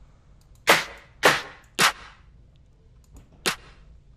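A synthesized electronic clap sample from reFX Nexus (the 'DR Claps 8' preset) played as single hits: three about half a second apart starting near the first second, then one more about three and a half seconds in. The hits are the clap sounding as notes are clicked into the piano roll.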